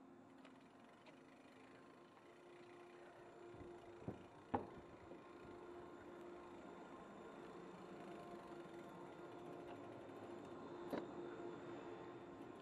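Faint steady hum of Doppelmayr chairlift station machinery running, growing a little louder through the clip, with two sharp knocks about four seconds in and another near the end.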